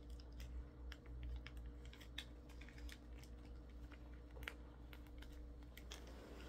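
Close-miked chewing of cinnamon bread: a run of small, irregular mouth clicks over a faint steady low hum.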